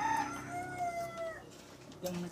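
A rooster crowing: a short note at the start, then one long held call that fades out about one and a half seconds in.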